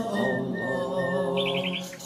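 A voice chanting a drawn-out dhikr of "Allah" over bird calls, with a quick trill of about five high chirps near the end.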